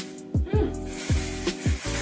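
Aerosol sunscreen spray hissing from a can onto a face, starting about half a second in, over background music with a steady beat of deep drum hits.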